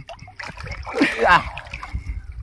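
Pond water splashing and sloshing around a swimmer close to the camera at the water's surface, with a short spoken word about a second in.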